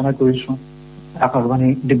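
A person talking in short phrases, with a pause of about half a second in the middle, over a steady electrical mains hum that carries on through the pause.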